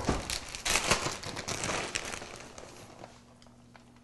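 Plastic bag of shredded cheese crinkling as it is handled and opened. The crackling is dense at first, then thins out and fades away in the last second or so.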